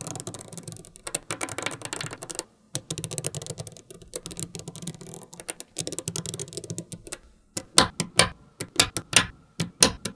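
Small magnetic balls clicking and clattering against one another as they are set into a flat grid by hand. A dense run of rapid ticking gives way, about seven and a half seconds in, to louder single snaps, a few a second, as balls jump together.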